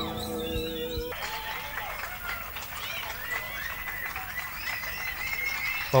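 A live rock band's final chord rings on and stops about a second in. Then faint whistles and crowd noise from the audience, heard through the stage microphones of a mixing-desk recording.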